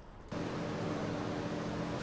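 TIG welding arc brazing a crack in a cast-iron cylinder head with aluminum bronze filler: a steady hum over a hiss, starting about a third of a second in.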